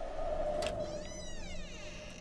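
A door creaking open in the film's sound, a squeaky wavering glide that rises and falls from about a second in, over a steady low hum.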